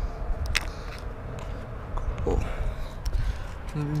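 A few light clicks and taps of plastic interior door trim being handled, the sharpest about half a second in, over a steady low rumble.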